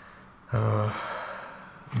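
A man's brief wordless vocal sound, a single held tone of about half a second, trailing off into a soft exhale: a sigh-like hesitation between sentences.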